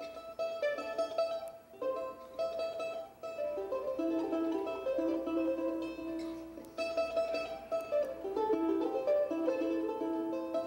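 Solo ten-string charango playing a quick melody picked note by note, with chords struck together now and then.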